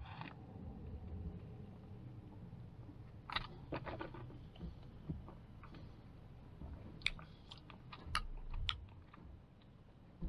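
Faint mouth sounds of someone tasting a soft drink: a sip from the can at the start, then scattered wet clicks and lip smacks as the drink is held and worked around the mouth.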